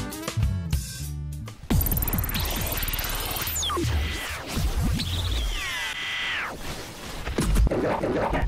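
Background music bed for the first second and a half, then a television station ident: a sudden crash of noise, whooshing sound effects with falling gliding tones, and a low thump near the end.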